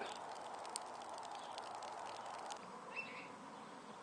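Faint steady background hiss with a faint steady hum, a few light ticks, and one short high chirp about three seconds in.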